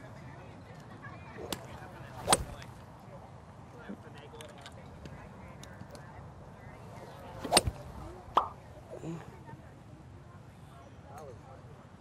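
Two sharp cracks of a golf club striking a ball, about two seconds in and again about seven and a half seconds in; the later one is the golfer's full swing with an 18-degree Callaway X Forged utility iron on a graphite shaft.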